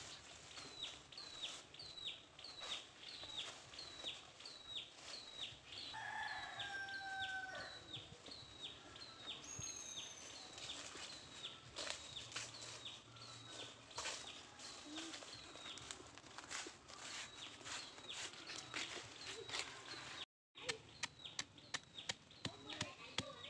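A rooster crows once, about six seconds in. Behind it a high, falling chirp repeats evenly, about three times every two seconds, with light scattered ticks.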